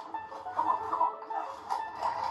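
Soundtrack of a funny-video compilation playing back: music with short, choppy sounds over it.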